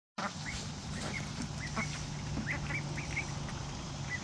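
Ducks giving short, high calls, about two a second, over a steady low hum.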